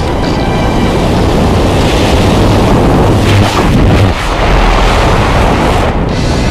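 Loud wind buffeting a glove-mounted camera's microphone as a tandem skydiving pair leaves the aircraft and drops into freefall.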